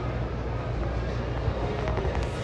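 Steady low rumble of a busy store's background noise, picked up by a moving phone microphone, with a couple of faint clicks near the end.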